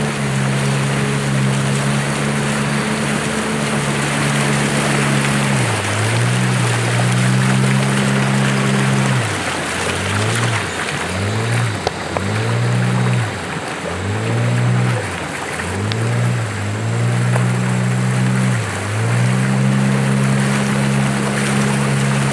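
Longboat's outboard motor running at speed with the wake rushing along the hull. About six seconds in its pitch drops and picks up again, and it keeps dipping and climbing back several times before settling to a steady run near the end.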